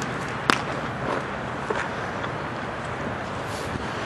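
Steady outdoor background noise with distant road traffic, and one sharp leather smack about half a second in, which is a baseball landing in a pitcher's glove on the return throw.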